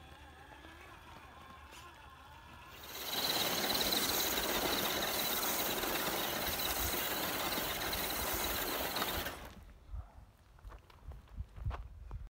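A Traxxas TRX-4 and an HPI Venture, electric RC crawler trucks, driving fast over gravel. About three seconds in, a loud crunching and spraying of gravel from the tyres starts with a high, steady motor whine, and it cuts off sharply after about six seconds. A few scattered knocks follow near the end.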